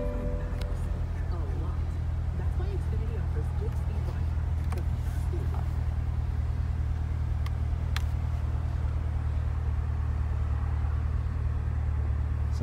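A 2021 Chevrolet Corvette Stingray's mid-mounted 6.2-litre LT2 V8 idling steadily in Park, heard from inside the cabin as a low, even rumble. A few light clicks come over it about five and eight seconds in.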